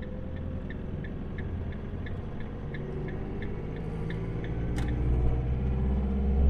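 Camper van engine and road rumble heard from inside the cab, with the turn-signal indicator ticking about three times a second until about four seconds in. The engine then grows louder as the van picks up speed, with a single sharp click near the end.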